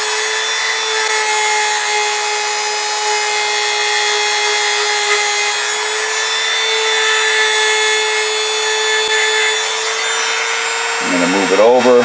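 Handheld rotary tool running at a steady speed and pitch. Its compound-charged polishing point buffs the inside of a sewing-machine bobbin-case tension spring under very light pressure.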